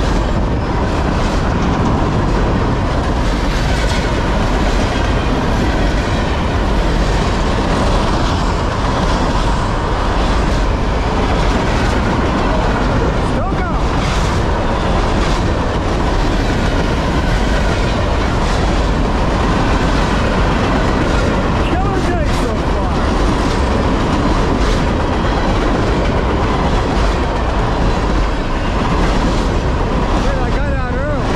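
Norfolk Southern freight train's loaded container cars rolling past at speed close by: a steady, loud noise of steel wheels on rail with faint, irregular clicks over the rail joints.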